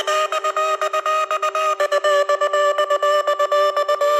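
Melodic techno breakdown: a high synth chord chopped into a fast, even pulse, with no bass or kick drum.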